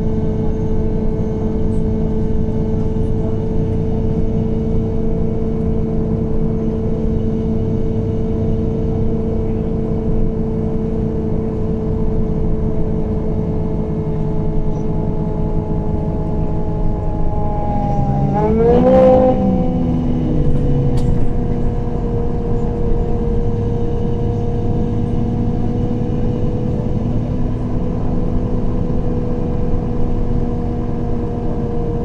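MAN Lion's City CNG city bus heard from inside the cabin while under way: its natural-gas engine and ZF automatic driveline make a steady drone with held tones over road rumble. A little past halfway, the note bends and shifts briefly and gets a little louder, then settles into a steady drone again.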